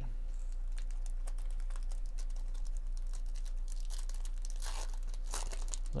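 A 2024 Bowman baseball card pack's foil wrapper being crinkled and torn open by hand. Small crackles run throughout, with a louder rip of tearing about five seconds in.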